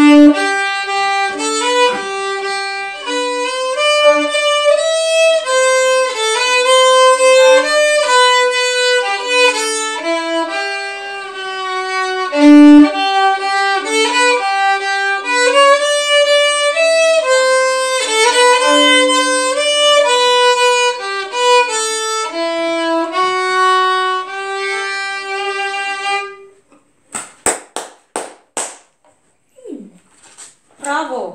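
Violin playing a Christmas melody, the music stopping about 26 seconds in; a few short clicks follow near the end.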